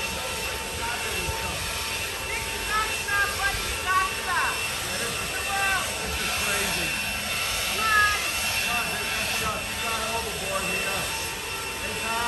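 Handheld leaf blower running steadily with a high whine.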